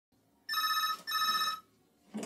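Telephone ringing: two short rings close together, the British double-ring pattern, loud and even.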